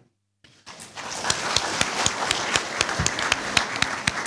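Audience applauding, with many individual claps. It starts after a brief dead silence about half a second in.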